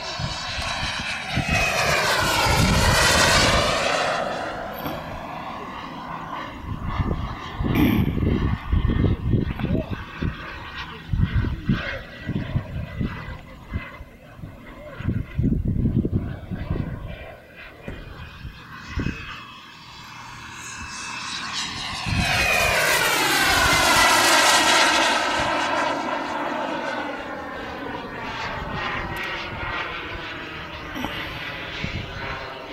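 Radio-controlled T-45 model jet making two passes. Each pass is a loud jet whine that falls in pitch as the plane goes by: one near the start and one from about two-thirds of the way in. In between are irregular low rumbling bursts.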